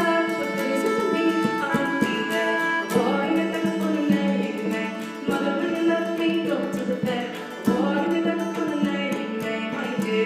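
Fiddle playing a flowing Irish tune, sustained bowed notes moving continuously from one to the next.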